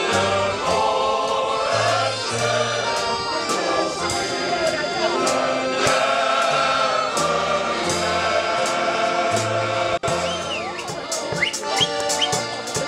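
Male shanty choir singing live in unison with drum kit accompaniment, the cymbal or hi-hat keeping a steady beat. The sound drops out for an instant about ten seconds in.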